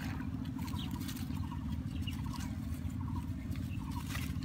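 Water hyacinth leaves rustling and swishing as someone wades and pushes through them, with short chirps repeating every second or so in the background.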